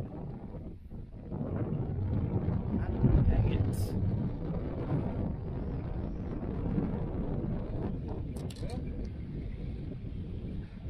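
Wind buffeting the microphone: a steady, gusting low rumble, with a few short clicks near the end.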